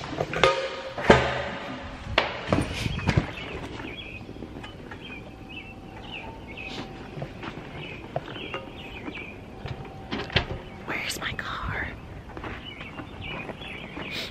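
Handling noise from a handheld camera carried while walking: a run of thumps and knocks over the first three seconds, then softer rustling and steps. Faint short high chirps come and go behind it.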